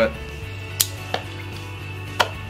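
Two sharp snips of a cigar cutter clipping the cap off a cigar, about a third of a second apart.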